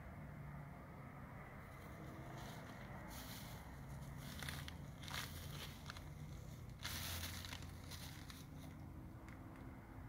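Plastic bags and litter crinkling in several short bursts over a faint low rumble, the longest crinkle a little past the middle, as the puppies move over the rubbish.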